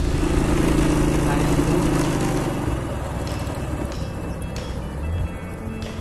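Small motorcycle engine running steadily while riding, with background music; the engine's low tone fades out about three seconds in, leaving the music.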